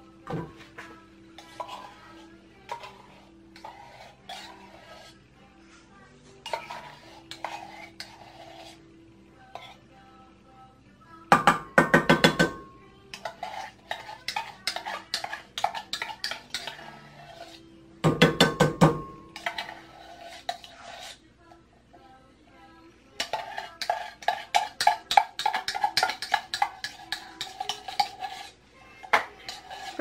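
A metal spoon scraping and clinking against an opened tin can of condensed milk and a stainless steel mixing bowl, with two louder clattering bursts and a quick run of repeated scraping strokes near the end.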